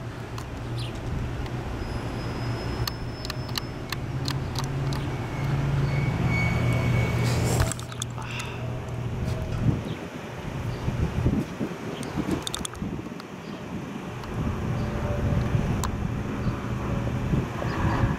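Car engine idling with street traffic noise. The low engine hum breaks off about eight seconds in and comes back more faintly near the end.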